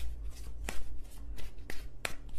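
A deck of tarot cards being shuffled: a soft rustle of cards broken by a few sharp snaps, the loudest about two-thirds of a second in.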